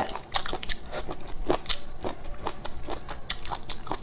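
Close-miked chewing of a mouthful of cold-dressed tilapia fish skin rolls: an irregular run of crisp, crunchy clicks as the springy skin is bitten through.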